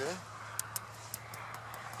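Thin ice on a pond surface clinking and scraping: a faint scratchy hiss with a scatter of small sharp ticks. It is the sign that the water is frozen over.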